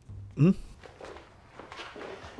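Soft, irregular footsteps on an indoor floor, faint under a short spoken reply.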